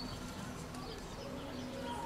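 Small birds chirping in short high whistled calls, scattered through the moment, over a low murmur.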